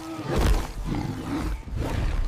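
AI-generated (Veo 3) movie sound effects of a giant lizard monster roaring and growling over a deep, continuous rumble, loudest about half a second in.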